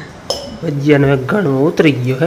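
Steel kitchen utensils clink once, ringing briefly, a fraction of a second in, followed by a person's voice talking over the rest.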